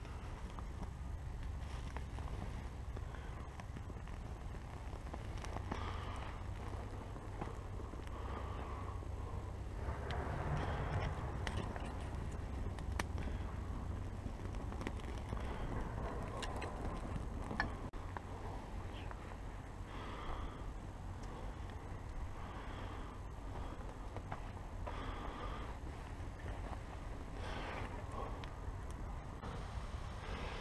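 A small fire of dry grass and twigs being lit and tended, with faint scattered crackles and the handling of sticks, over a steady low rumble.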